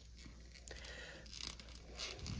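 Faint handling noise of a plastic action figure being posed by hand: a few soft clicks and rubs from its joints and fingers, over a low steady background hum.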